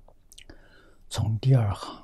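An elderly man speaking in a low voice, his speech beginning about a second in after a near-quiet start with a few faint mouth clicks.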